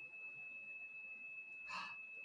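Continuous electronic computer beep from the anime: one steady high-pitched tone that starts suddenly and holds. A short breathy hiss near the end.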